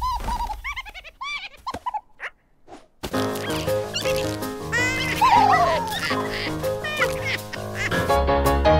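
Animated-film soundtrack. The first two seconds hold short, high chirping cartoon-character calls, with a near-silent pause after them. About three seconds in, music starts with a beat, with sliding whistle-like sound effects over it.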